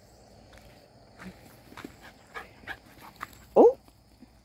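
A young dog gives one short, loud rising whine or yip near the end, after a few faint footsteps on dry, straw-strewn ground.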